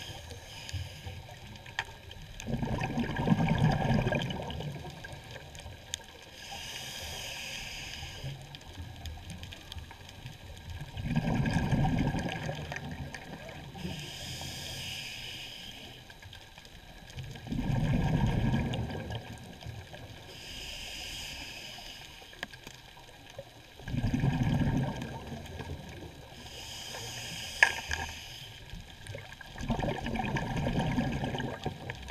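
Scuba diver breathing through a regulator underwater: a hissing inhale alternating with a low, gurgling burst of exhaled bubbles, a full breath about every six to seven seconds. A single sharp click comes near the end.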